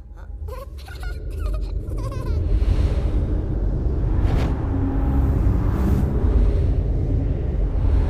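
A few short squeaky chirps in the first two seconds, then a low rumble that swells up over a couple of seconds and holds.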